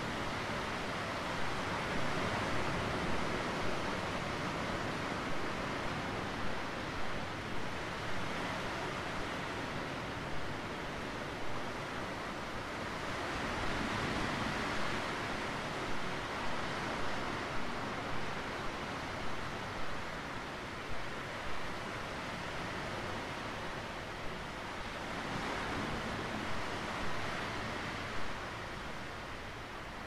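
Sea surf breaking and washing over a rocky shore: a steady rush of waves that swells now and then.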